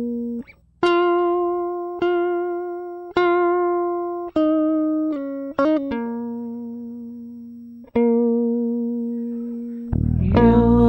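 Background music: a slow melody of single plucked notes, each ringing out and fading, about one a second, with a quick little run in the middle and a long held note near the end.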